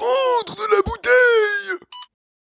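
A person's voice making long wordless vocal sounds: two drawn-out calls about a second apart, each sliding down in pitch. A short high beep comes right at the end.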